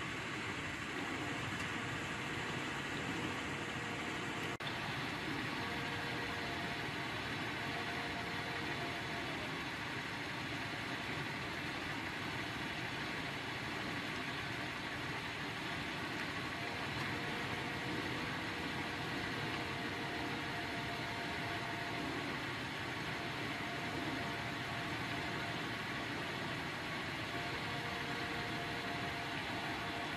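Steady low background hum and hiss, engine-like, with faint tones fading in and out several times and one small click about four and a half seconds in. No thunder is heard.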